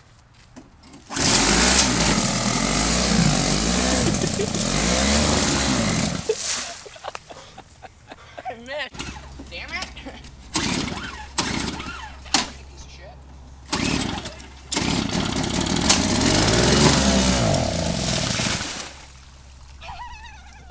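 Toro single-stage snow blower's small engine running in a muddy puddle, with two loud surges, about a second in and again around fifteen seconds in, as it churns through water and mud, its pitch rising and falling under the load; between the surges it runs more quietly.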